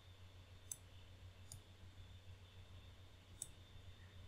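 Near silence with a low steady hum, broken by three faint, sharp computer mouse clicks spread across the few seconds.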